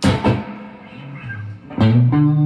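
Sterling by Music Man Cutlass electric guitar being played: a chord struck at the start rings and fades, then another is struck just before the end.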